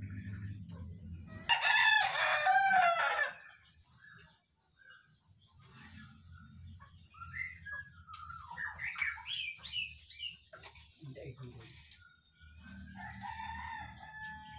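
A rooster crowing once, loud, for about two seconds shortly after the start. Softer scattered bird chirps and calls follow later.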